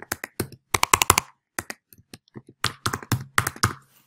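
Typing on a computer keyboard: quick runs of key clicks separated by short pauses.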